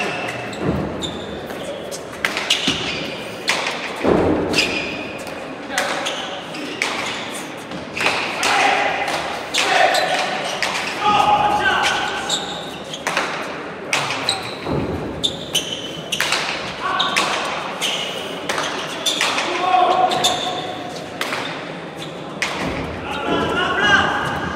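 A hard pelota ball is struck by bare hands and smacks off the walls and floor of an indoor trinquet court during a rally, giving a run of sharp impacts that echo in the hall. Voices call out between shots.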